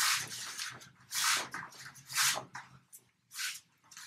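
Rustling and scuffing from martial-arts uniforms and bare feet shuffling on a foam mat, in four short swishes about a second apart as the arm is pulled and the feet slide, over a faint low hum.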